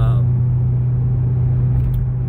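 Steady low drone of a car's engine and road noise, heard from inside the cabin while driving.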